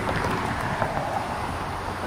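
Road traffic: a steady rush of car tyre and engine noise from vehicles driving past on a city street.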